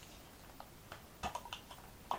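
A scatter of light clicks and taps from small objects being handled close to the microphone, the loudest a little past a second in.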